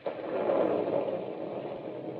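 Radio-drama storm sound effect: a rush of noise that comes in suddenly, is loudest about half a second in, then holds steady.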